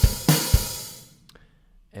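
Superior Drummer's sampled acoustic drum kit playing back a short phrase: quick kick and snare hits under a cymbal crash that rings out and fades within about a second.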